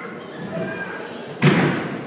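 A single loud thud about one and a half seconds in, followed by a short ring-out in the hall, over low audience voices.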